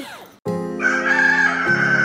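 A rooster crowing, one long drawn-out call starting about a second in, over steady held music chords that come in after a brief pause.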